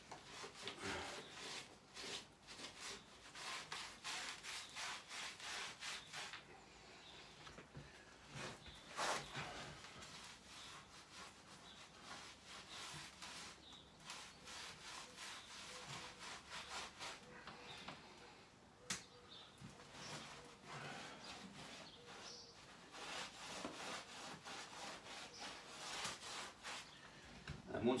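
A paintbrush scrubbing across bare brickwork in quick repeated strokes, brushing salt neutralising cream onto the wall.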